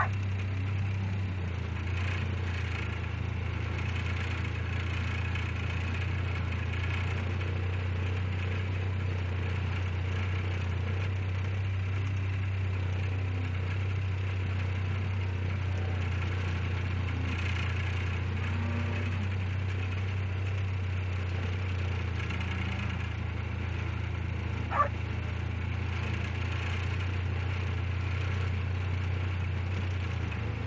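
Steady low hum of an idling engine, even throughout, with one sharp click about 25 seconds in.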